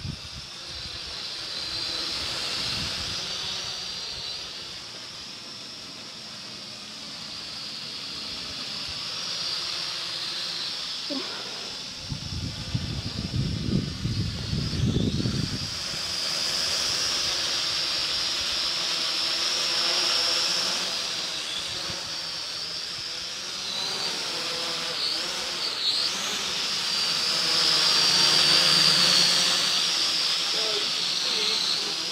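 MJX X601H hexacopter's six motors and propellers whirring in flight: a high, steady whine that wavers up and down in pitch as it manoeuvres, growing louder near the end as it comes close. A low rumble joins in for a few seconds around the middle.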